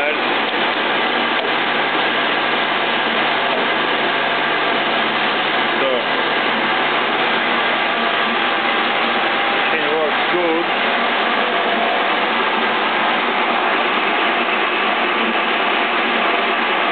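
Stanko 2L614 horizontal boring machine running steadily, a constant motor and gearbox hum with several steady whining tones. The machine is working again after a fire-burned relay coil in its control circuit was replaced.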